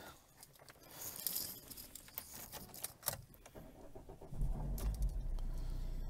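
A few light clicks and rattles, then about four seconds in a Vauxhall Corsa's CDTI diesel engine starts and settles into a steady low idle, heard from inside the cabin.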